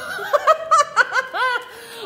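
A woman laughing in a string of short, high-pitched bursts that fade out in the second half.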